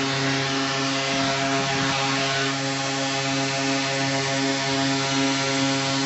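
Arena horn sounding one long, steady, low note to signal the end of the game, over crowd noise.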